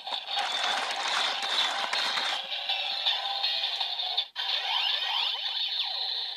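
Electronic sound effects from a DX Build Driver toy's built-in speaker: a hissing rush for about two seconds, then, after a brief break, a run of sweeping synth tones gliding up and down.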